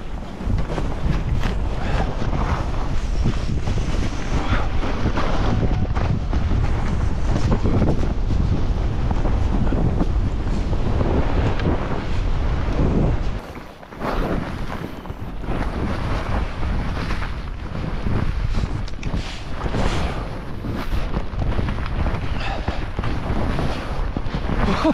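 Wind buffeting the microphone of a skier moving downhill, mixed with the hiss of skis running through powder snow. It drops away briefly about halfway through, then picks up again.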